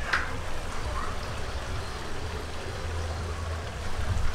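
Steady outdoor background noise with a low rumble underneath.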